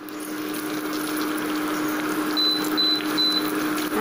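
Curry leaves, mustard seeds and cumin sizzling in hot coconut oil in a steel pot as they are tempered, over a steady low hum. Three short high beeps come a little past halfway.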